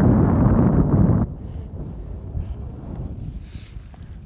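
Wind buffeting the microphone, loud and rushing for about the first second, then cutting off suddenly to a faint steady wind rush.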